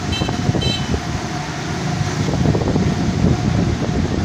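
Engine and road noise of a moving vehicle, heard from on board as a steady, loud rumble. Two brief high chirps sound within the first second.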